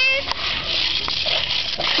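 A toddler's brief high-pitched squeal right at the start, over a steady high hiss, with faint scattered voices of small children playing.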